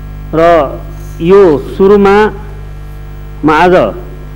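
Steady electrical mains hum on the sound feed, with a man's voice breaking in four times for short, separate words with pauses between them.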